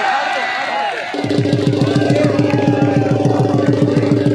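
Crowd voices, then about a second in a fast, steady drum beat starts up with a sustained droning tone over it.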